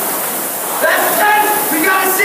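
Indoor rowing machine's air flywheel whirring steadily under a hard stroke, with voices shouting over it from about a second in.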